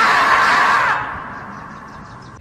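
The screaming marmot meme sound: one long, loud scream that holds for about a second, then trails off and fades away.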